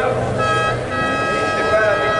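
A voice over the circuit's public-address loudspeakers, with a steady high tone held for about a second and a half from about half a second in.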